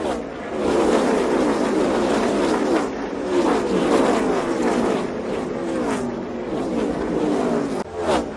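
Race car engines, several running at once at speed, their pitch sliding up and down as the cars pass.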